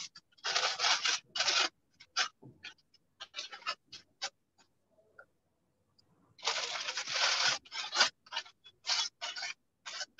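Newspaper being torn by hand into small pieces for papier-mâché pulp: two longer rips, about half a second in and again around six and a half seconds, with many short quick rips between.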